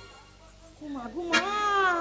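A performer's amplified voice: after a short lull, a voice comes in about a second in and rises into a long, high, drawn-out cry that falls in pitch.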